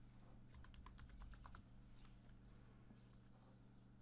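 Faint computer keyboard typing: a quick run of about ten key clicks lasting about a second as a file number is entered, then a few lighter single clicks, over a faint low hum.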